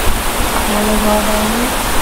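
Steady rushing hiss on a clip-on microphone, with a faint hummed note lasting about a second in the middle.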